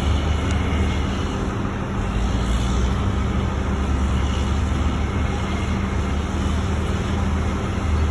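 Skid steer's diesel engine running steadily as the machine drives, a constant low drone.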